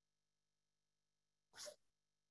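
Near silence over a video-call line, broken by one short, faint burst of noise about one and a half seconds in.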